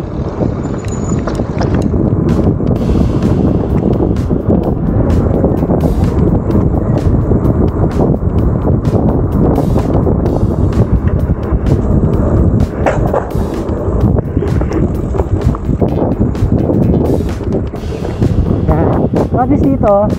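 Trail-riding noise from an electric fatbike on a dirt forest trail: wind buffeting the action camera's microphone, with a dense run of knocks and rattles as the bike rolls over rough ground.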